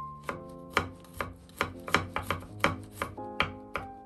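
Kitchen knife mincing a garlic clove on a wooden cutting board: a run of sharp chopping strikes, about three a second, somewhat uneven. Soft background music with held notes plays underneath.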